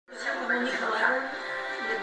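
A film's soundtrack playing from a television: a voice speaking over background music, heard through the TV's speaker.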